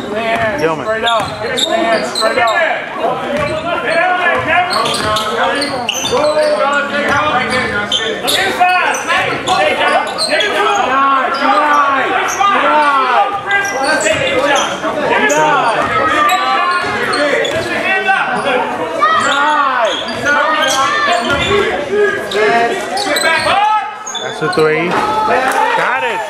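A basketball being dribbled and bouncing on a hardwood gym floor, many single thuds through the whole stretch, in a reverberant hall with voices calling out over it.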